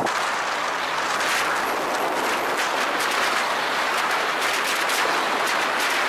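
Wind rushing over a bonnet-mounted camera's microphone as the car drives along the track: a steady, hissing rush full of fine crackles from the buffeting.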